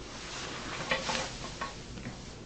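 Soft rustling and scraping of photographs and paper being handled on a table, loudest about a second in, over a steady hiss from the recording.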